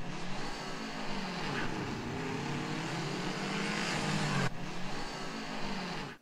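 Go-kart engines running as the karts drive around the track, their pitch rising and falling. The sound changes abruptly about four and a half seconds in.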